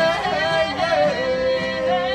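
Live fiddle and acoustic guitar with a man and a woman singing together. The melody bends, then settles on a long held note about halfway through.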